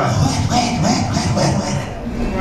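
A preacher's loud, rough shouting into a handheld microphone, with no clear words.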